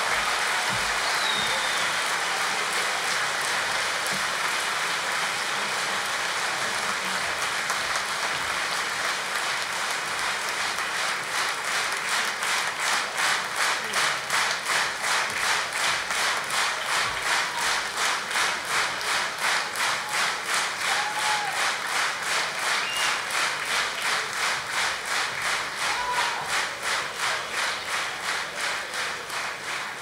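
Large concert audience applauding: dense, scattered applause that about eleven seconds in settles into steady rhythmic clapping in unison, about two claps a second.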